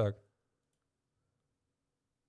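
A man's voice finishing a short word, then near silence.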